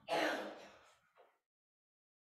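A man clearing his throat once, a short burst that fades out within about a second.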